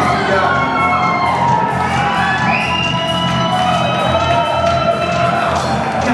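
Live heavy metal band playing loud: held, gliding notes over a steady beat of drum hits, with a crowd cheering.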